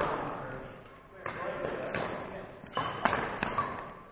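Badminton rally in a large gym hall: sharp racket hits on the shuttlecock, several in quick succession in the second half, with footfalls on the wooden court.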